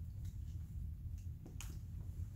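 Handling noise as headphones are taken off: a few light clicks, the loudest about one and a half seconds in, over a low steady hum.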